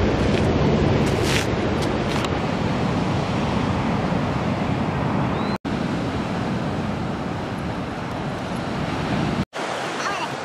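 Steady wind buffeting the microphone over the wash of ocean surf, cut off briefly twice by edits, about halfway and near the end.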